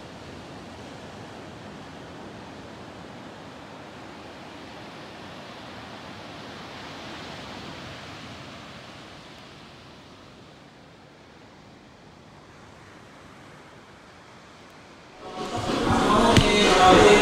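Ocean surf washing onto a sandy beach: a steady rush of breaking waves that swells a little midway and then eases. Just before the end, much louder voice and music cut in.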